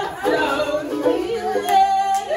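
A woman singing with her voice sliding up and down in pitch, accompanying herself on a ukulele.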